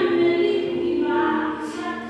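Unaccompanied singing in long held notes.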